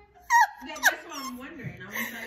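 A woman laughing hysterically, high-pitched and squealing, starting a moment in with a sharp loud shriek a little under a second in.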